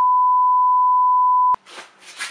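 Steady 1 kHz sine-wave test tone, the reference tone that goes with colour bars, held at one pitch. It cuts off abruptly about a second and a half in, giving way to faint room noise.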